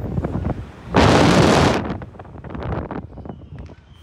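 Wind blasting across the onboard microphone of a Slingshot reverse-bungee ride capsule as it is launched. A loud rush comes about a second in and lasts under a second, with lower gusty buffeting around it.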